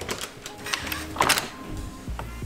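Several short clicks and knocks, the loudest cluster just over a second in, from a glass door's push handle and latch being worked. Background music plays underneath.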